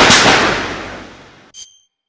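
A loud sudden bang, a title-card impact sound effect made of two close hits, dying away over about a second and a half, followed by a short high metallic ding, then silence.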